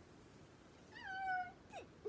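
A single short, high-pitched, meow-like cry about halfway through that rises briefly and then falls, followed by a quick downward squeak near the end.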